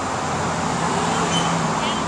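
Steady outdoor background noise with faint voices in it, and a faint low hum in the middle.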